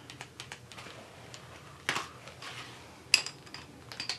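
Small clicks and ticks of coloured pencils being handled and worked on paper, with a short scratchy stroke just before two seconds in and a sharp click a little after three seconds in.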